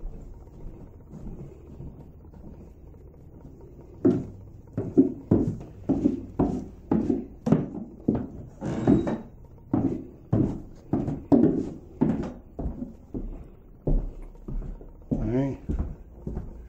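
Footsteps going down a flight of house stairs and on across the floor below: a steady run of about two footfalls a second, starting about four seconds in.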